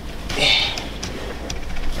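Clothing and seat rustling with light shuffling knocks as a person clambers across a truck cab into the driver's seat, over a steady low rumble.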